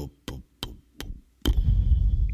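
A produced transition sound effect. Sharp ticks slow down steadily, from about three a second to one, and then a deep bass hit comes in about one and a half seconds in and holds.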